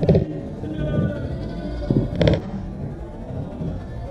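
Players' voices calling out across the football pitch, with a short loud shout right at the start and another about two seconds in, over a steady low rumble.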